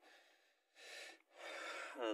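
Faint breathing by a man: a short breath about a second in, then a longer one that runs straight into his next words.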